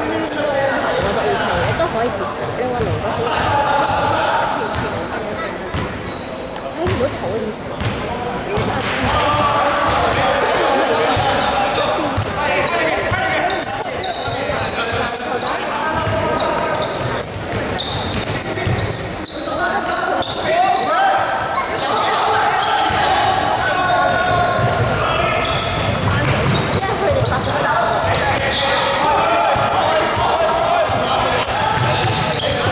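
Basketball game sounds echoing in a large indoor hall: a basketball bouncing on the wooden court, many short high-pitched sneaker squeaks, and a steady mix of indistinct voices from players and people at the sideline.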